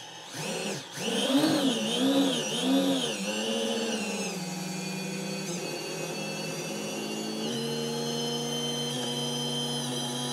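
Four small brushless quadcopter motors, driven by KISS 24A ESCs, spinning with no propellers fitted on a first power-up: a high whine that rises and falls several times as the throttle is worked. It then settles into a steady whine that steps up in pitch once, about seven and a half seconds in.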